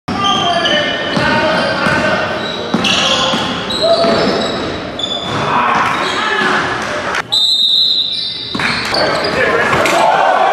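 Live game sound in a gymnasium: a basketball bouncing on the hardwood, sneakers squeaking in short high chirps, and players' and spectators' voices echoing around the hall. About seven seconds in, a higher steady tone holds for about a second.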